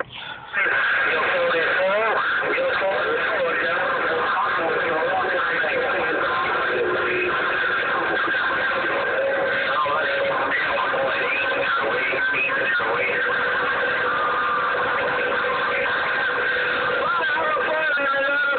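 CB radio speaker receiving several distant stations talking over each other at once, garbled and unreadable under steady noise, with steady whistles from other carriers on the same channel.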